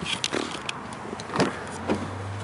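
A 2005 Lexus RX330's rear side door being opened: a few light clicks of the handle and latch, then a louder knock about one and a half seconds in as the door comes free.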